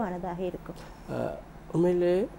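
Speech only: a woman's voice trails off, a short pause, then a man starts speaking, in a small studio.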